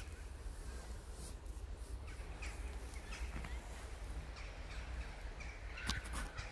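Several short bird calls, crow-like, from about two seconds in, the strongest near the end, over a steady low rumble.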